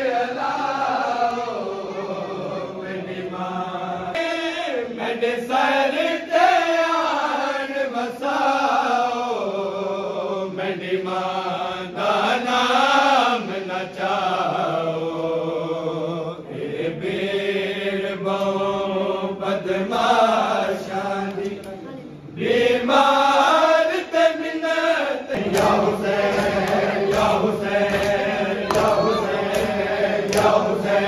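Men's voices chanting a noha, a Shia mourning lament, continuously. About 25 seconds in, sharp rhythmic slaps of bare-hand chest-beating (matam) join the chant.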